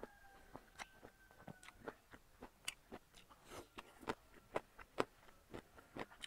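A person chewing a mouthful of food close to a lapel microphone: irregular wet clicks and smacks of the mouth, about two or three a second.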